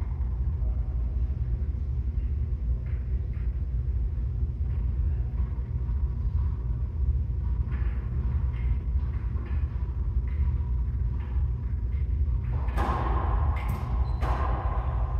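Steady low rumble in an enclosed racquetball court. Near the end come a few sharp smacks of a racquetball being bounced and struck by a racquet on a serve, echoing off the court walls.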